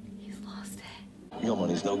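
Only speech: a short whisper over a low steady hum, then a man's voice starting about one and a half seconds in.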